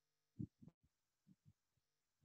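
Near silence, with a few faint, short low thumps in the first half.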